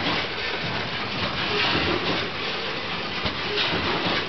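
Bagging machine running steadily, a continuous mechanical clatter with fine rapid ticking as the kraft paper web feeds through its rollers.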